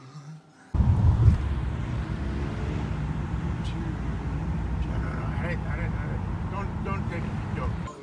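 Road and engine rumble inside a moving car, starting abruptly about a second in and cutting off just before the end, with faint voices in the latter half.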